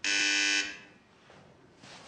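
Electric doorbell buzzer sounding once: a single harsh, steady buzz lasting just over half a second, then cutting off.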